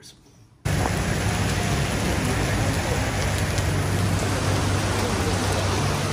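Heavy monsoon rain falling on a street and pavement, a loud, steady downpour that cuts in abruptly about half a second in.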